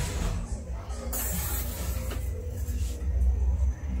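Furniture being shifted and a wardrobe opened: a white house-frame child's bed is pushed aside and the wardrobe's contents handled, scraping and rustling over a low rumble, with a burst of rustling noise about a second in.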